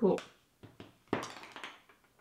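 A woman says a short word, then a few faint taps and a brief breathy rustle lasting about half a second, a little over a second in.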